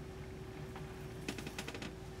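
A few faint, light clicks of small glass beads and a beading needle being handled as the thread is drawn through the beads, bunched in the second half over a faint steady hum.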